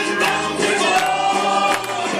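A recorded song with group singing and instrumental accompaniment, played back over loudspeakers.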